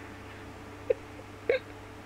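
A woman's stifled, nearly silent laughter: two short squeaky gasps, about a second and a second and a half in, over a faint low steady hum.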